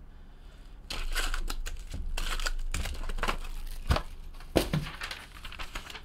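Foil-wrapped trading card packs crinkling and rustling as they are lifted out of their box and set down, with a sheet of printer paper handled near the end.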